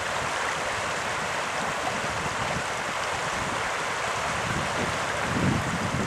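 Steady rushing noise of a river's current around the raft, mixed with wind buffeting the microphone.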